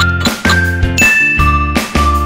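Light background music with a steady beat, with bright bell-like dings ringing over it.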